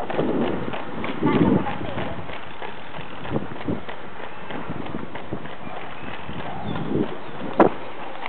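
Running shoes slapping on asphalt in an irregular patter over a steady rush of wind and road noise from a moving bicycle, with a few short muffled voice sounds.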